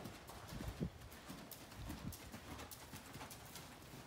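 Faint, irregular hoofbeats of a ridden horse moving over the soft dirt footing of a covered riding arena.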